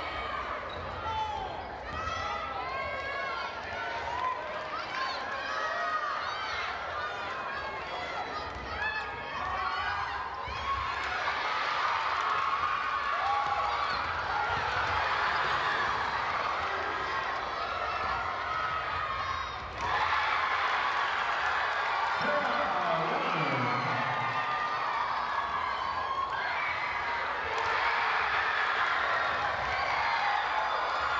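Gym sound of a basketball game in play: sneakers squeaking on the hardwood court and a basketball bouncing, over steady crowd chatter, with the crowd getting louder about ten seconds in and again near the twenty-second mark.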